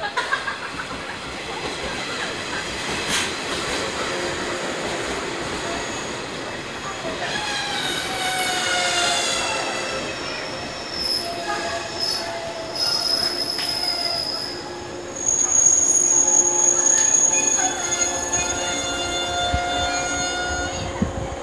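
JR 107 series six-car electric train pulling into the platform and braking to a stop: rolling noise over the rails, a falling whine about halfway through, then a high, steady brake squeal that is loudest over the last five seconds.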